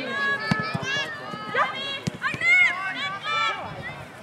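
Footballers on an outdoor pitch shouting short calls to one another during play, several high-pitched women's voices, with a few sharp knocks in between.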